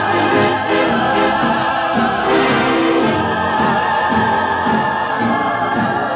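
Original early-1940s German film-song recording: an orchestra playing long held notes with a slight waver over a busy accompaniment, with no words sung.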